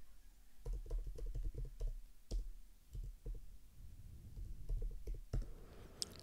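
Computer keyboard being typed on: quick, irregular runs of soft key clicks, with a few sharper keystrokes in the middle.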